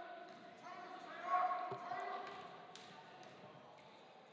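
Quiet gymnasium hush during a free throw: faint distant voices in the hall, fading over the first few seconds, with a single low thump of a basketball about halfway through.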